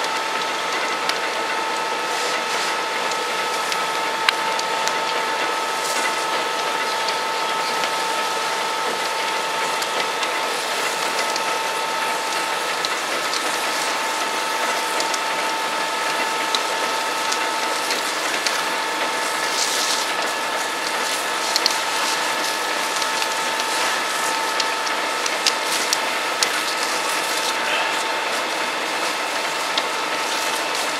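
Dense, continuous crackling and snapping of a burning building over a steady hissing noise, with a constant machine whine underneath.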